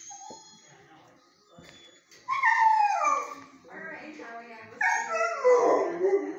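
A young dog giving two long, loud howling whines through the kennel fence, each falling in pitch: one about two seconds in, and a second, longer one near the end.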